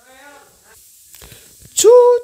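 A voice imitating a little train's whistle: a loud, steady held "tchou" that starts near the end, after a stretch of faint, quiet voices.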